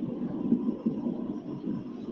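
Faint, muffled speech in the background, low in pitch and without clear words.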